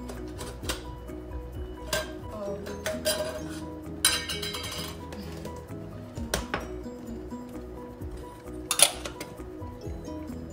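Background music with several clinks and knocks of tins and kitchen utensils being handled on a counter, the loudest knock near the end and a short rattle about four seconds in.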